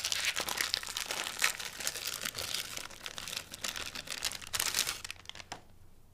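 Plastic wrapper of a frozen ice cream bar crinkling as it is pulled open by hand, a dense run of crackles that dies away about five seconds in.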